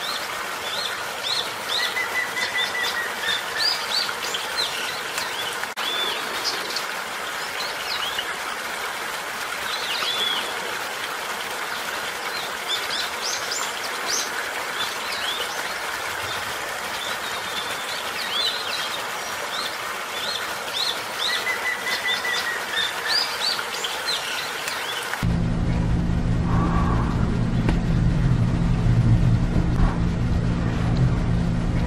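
Many small birds chirping in quick, high calls over a steady background hiss, with a short whistled note twice. About 25 seconds in, the birdsong cuts off suddenly and a loud, low, steady hum takes over.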